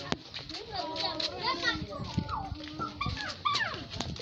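High-pitched voices calling and shouting, their pitch sliding up and down, with a sharp click about a tenth of a second in.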